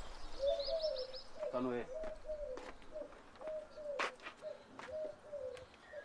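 A dove cooing in a steady run of short, slightly falling coos, about two a second. A small bird chirps briefly near the start.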